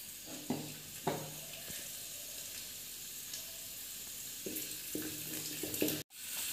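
Cashew nuts frying in hot fat in an aluminium pan, with a steady sizzle. A spatula gives a few brief knocks or scrapes about half a second and a second in, and more towards the end.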